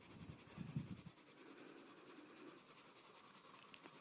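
Faint rubbing of a drawing tool on paper, mostly in the first second, otherwise near silence.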